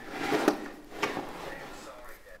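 Wooden painting box being handled and turned round, its wood scraping and bumping, with a sharp knock about a second in.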